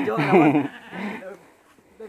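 A man laughing loudly, his voice wavering up and down in pitch, dying away about a second and a half in.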